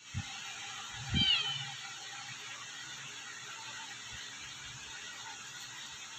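A kitten gives one short, high-pitched mew about a second in, with a soft low thump at the same moment, over a steady faint background hiss.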